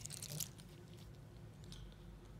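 Faint handling noise of a wristwatch in the hand: a click and a brief rustle in the first half second as it is moved toward the camera, then quiet room tone.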